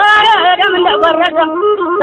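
A single voice chanting in Amharic in traditional Amhara heroic style, holding long notes that bend and waver up and down in pitch.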